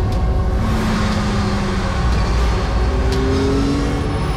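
Loud, steady rumble and road noise of fast-moving motor vehicles, with an engine tone that rises in pitch near the end as a vehicle accelerates.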